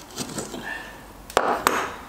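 Rusty parts of a cast-iron hand plane being handled: the freed lever cap and cutting iron are lifted off and set down, giving two sharp metal clicks about a second and a half in, with a short scrape between them.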